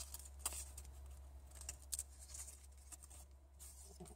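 Faint rustling and a few light taps of copy paper as a scrap strip is wrapped around a stack of printed paper label strips, over a steady low hum.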